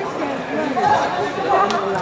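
Several people talking over one another in a large indoor hall, with one sharp knock near the end.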